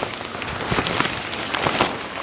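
A 150-denier ripstop tent fly being pulled off the frame and bunched up by hand: the fabric rustles and crackles with many quick irregular snaps.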